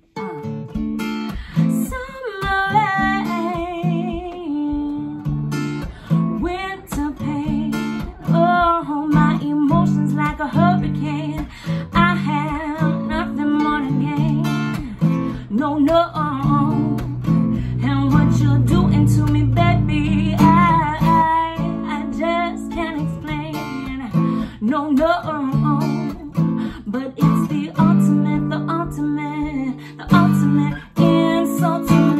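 Acoustic guitar strummed in steady chords with a woman singing over it; the voice comes in about two seconds in.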